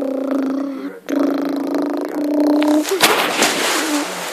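A person's voice making a held, buzzing engine noise for a toy bus. It breaks off once about a second in, runs again for nearly two seconds, then gives way to a breathy rushing hiss near the end.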